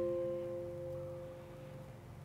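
Soft background score: one held chord slowly fading away.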